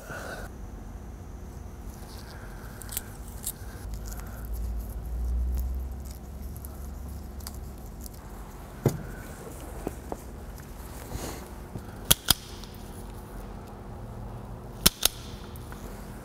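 Quiet handling noise of hand tools and wires during soldering work: a few sharp clicks, with two close pairs near the end, over a low steady background that swells briefly about a third of the way in.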